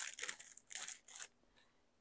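Small product packaging being worked open by hand: a few short rustles and tears in the first second.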